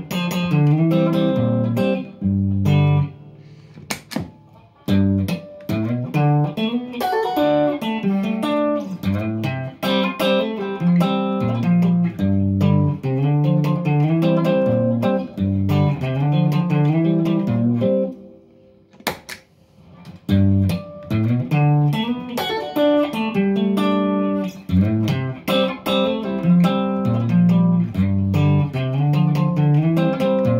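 Electric guitar played through Bluesbreaker-style overdrive pedals: blues phrases of single notes and chords, with short breaks about four seconds in and again just before the twenty-second mark.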